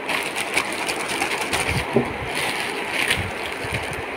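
Plastic packaging crinkling and rustling: a black poly courier mailer and the clear plastic bag inside it being handled and opened by hand, with many small crackles and a few soft low bumps in the second half.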